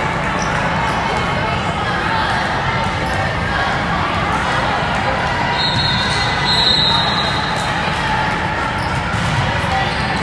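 Echoing ambience of a busy volleyball hall between rallies: balls thudding on the courts and players' and spectators' voices. Two short, high, steady tones sound about six and seven seconds in.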